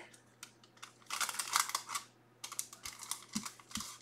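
Quick, light clicks and faint rustling made by hand at a desk, in two short clusters about a second apart.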